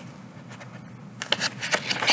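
Page of a thin paperback picture book being turned by hand: paper rustling and flapping in a quick cluster of strokes, starting about a second in.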